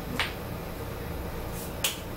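A sharp click just after the start, then a single hand clap near the end.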